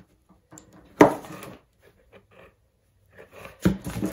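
A short burst of compressed air from an air blow gun at 80 PSI, fired into a fibreglass cowl mold to blow the part loose. It starts sharply about a second in and fades over about half a second, and the part does not pop out. A single knock follows near the end.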